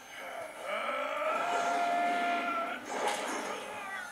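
Soundtrack of an anime episode: one long, steady pitched sound held for about two seconds, followed by a short burst about three seconds in.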